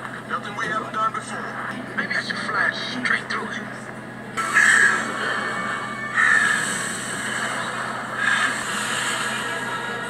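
A film's soundtrack recorded off the screen: voices over background sound at first, then from about four seconds in a sudden louder stretch of music with three swells.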